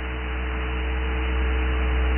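Steady electrical mains hum over an even hiss in the recording, with a couple of fainter steady higher tones beside the low hum.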